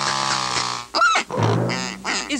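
A sustained music chord that stops just under a second in, then a cartoon duck voice quacking briefly.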